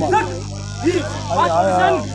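Voices shouting short, sharp calls, several in quick succession, over a steady low hum.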